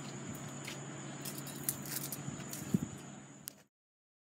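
Faint outdoor background noise with a steady low hum and a thin high whine, broken by a few light clicks and taps. It cuts off suddenly to complete silence about three and a half seconds in.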